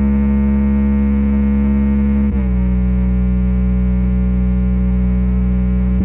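Deep, held synthesizer bass tones with many overtones, as in a subwoofer bass-test track. The note slides down a little about two seconds in and changes again at the end.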